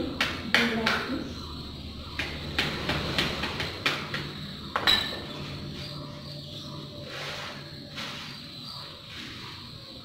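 Small hand tool scraping and knocking in a tray of soil, compost and sand mix. A quick run of sharp clicks and scrapes fills the first half, then it thins to fainter scraping, over a low steady hum.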